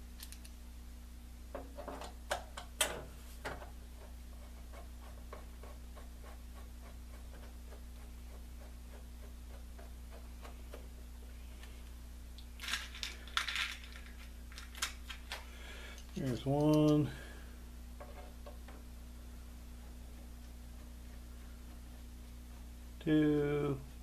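Small screws and a screwdriver clicking against a radio's metal bottom cover as the screws are put in: a few light clicks near the start and a quicker run of sharp metallic clicks about halfway through. A steady low hum runs underneath.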